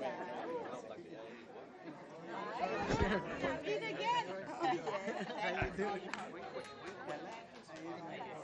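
Several people talking at once in a large room, a mix of overlapping voices with no one voice leading. Two dull low bumps are heard, about three seconds in and again past halfway.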